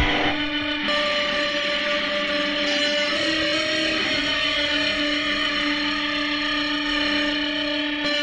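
Instrumental indie rock: the loud full-band playing cuts off right at the start, leaving electric guitar through effects holding a few long sustained notes, shifting pitch a few seconds in.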